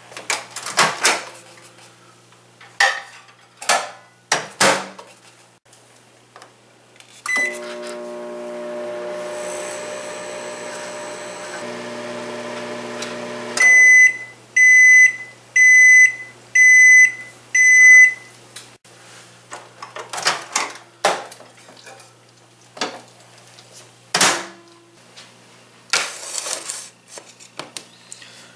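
A countertop microwave oven: clicks and knocks as the door is shut and the keypad pressed, then the oven running with a steady hum for several seconds. It stops and gives five loud beeps about a second apart to mark the end of the cooking cycle, followed by more clicks and knocks as the door is opened and the dish handled.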